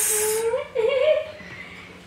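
A baby's brief wavering coo about half a second in, right after the hissed end of a spoken word; the last second is quiet room sound.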